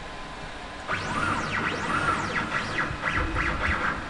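Stepper motors of a wood CNC router jogging an axis: a whine that sweeps up in pitch and back down with each move as the motor speeds up and slows down. It starts about a second in, with two long sweeps and then several quicker, shorter ones.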